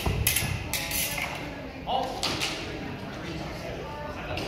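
A classical foil fencing exchange: steel foil blades clicking against each other and fencers' feet stamping on the floor. There are a few sharp knocks in the first second and again a little after two seconds in.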